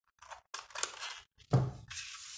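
Scissors cutting a thin acetate plastic sheet in short snips, then a thunk about one and a half seconds in as the scissors are set down on the table.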